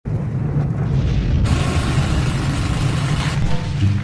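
Logo intro sound effect with music: a deep boom and rumble starting suddenly, with a loud noisy rush from about a second and a half in lasting nearly two seconds, and musical tones coming in near the end.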